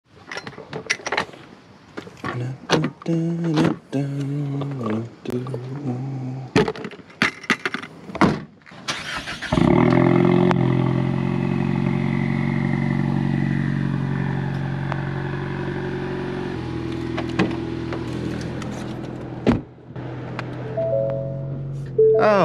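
Ford Mustang EcoBoost's 2.3-litre turbocharged four-cylinder starts about nine and a half seconds in and runs at a fast start-up idle, which steps down to a lower idle about seven seconds later. Intro music with a beat and a short laugh come before it.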